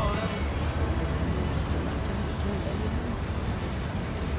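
Ride noise on the open top deck of a double-decker sightseeing bus: a steady low engine and traffic rumble in open air, with faint voices in the background.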